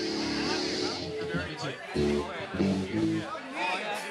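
Electric guitar played through an amplifier: a held chord rings through the first second, then a few short chords come about two seconds in, over people talking.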